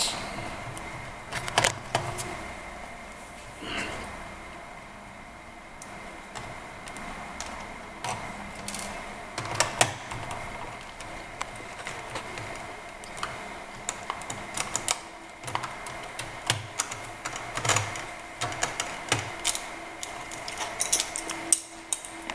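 Small screwdriver backing out the screws that hold a laptop's wireless card, with irregular light clicks and taps of metal on the screws and plastic chassis over a faint steady hum.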